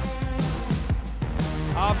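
Background music with a steady beat; a commentator's voice comes in near the end.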